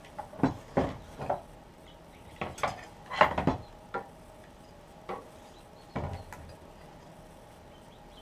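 Wooden leg pieces and a metal sliding bevel being handled and set down on a wooden workbench while a cut line is marked: about a dozen light knocks and clacks, the busiest around three and a half seconds in, then quiet from about six and a half seconds in.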